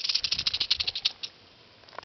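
Western diamondback rattlesnake buzzing its tail rattle as a defensive warning: a rapid, even buzz that slows and stops a little over a second in, with one last brief rattle just after.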